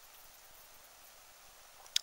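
Faint steady hiss of a compressed fire log burning in open flame on a metal tray, with a few very faint high ticks in the first second.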